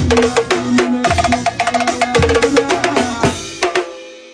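Acoustic drum kit played live over a backing track, with bass drum and snare hits in a fast pattern. The playing stops with a last hit near the end, and the sound fades away.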